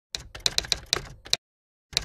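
Keyboard typing clicks: a quick run of about eight keystrokes lasting a little over a second, then a single click near the end.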